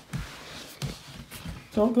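Footsteps on a floor: a few soft, low thumps about two-thirds of a second apart, with faint rustling between them.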